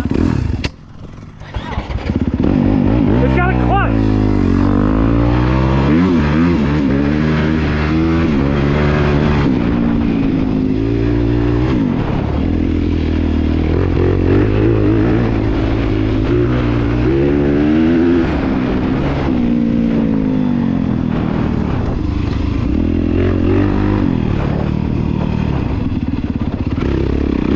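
Dirt bike engine running under way, revving up and down over and over as the throttle is worked, after a brief drop in sound about a second in.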